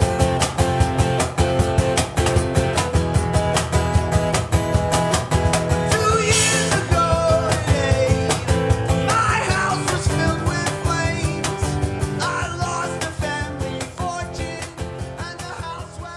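Acoustic guitar strummed fast and steadily, with a voice singing over it from about six seconds in. The song fades near the end.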